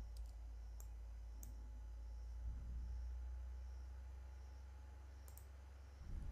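A computer mouse clicking a few times, with a double click near the end, over a faint steady low hum.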